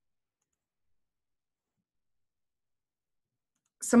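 Near silence: the audio is cut to nothing, as by a call's noise gate, until a woman's voice starts speaking just before the end.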